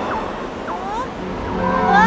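Cartoon wind blowing steadily over snow, with short whistling gusts that slide up and down in pitch. Music with long held notes comes in near the end.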